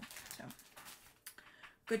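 Clear plastic bag crinkling and rustling as it is handled, with a couple of spoken words.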